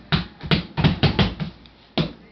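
A baby laughing in a quick run of short, rhythmic bursts, with a sharp burst again at the very end.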